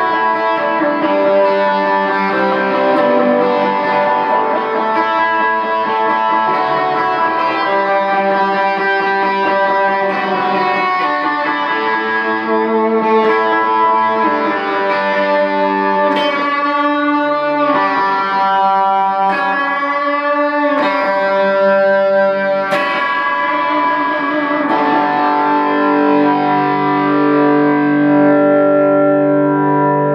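Ibanez CMM1 electric guitar played through a Boss Katana 50 amp with delay and looping, held notes ringing over each other. The middle has a busier, shimmering stretch, and lower sustained notes come in near the end.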